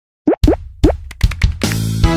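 Channel intro jingle: a quick run of five or six cartoon-style plop sound effects, then music swells into a sustained chord near the end.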